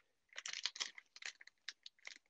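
Rummaging through small objects: an irregular flurry of light clicks, knocks and crinkles as things are moved about while searching.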